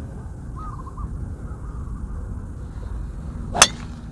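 A golf driver striking a teed-up ball on a tee shot: one sharp crack near the end, over a low steady rumble.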